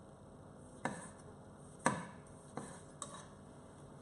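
Kitchen knife cutting tomatoes on a wooden chopping board: four separate knocks of the blade hitting the board at uneven intervals, the loudest about two seconds in.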